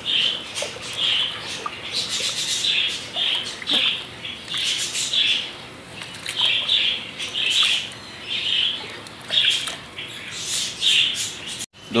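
Small birds chirping over and over, a short call about every half second, with the swish of hands rubbing bird seed in a tub of water.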